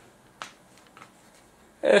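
Faint room tone with a single sharp click about half a second in and a faint tick a moment later; a man starts speaking near the end.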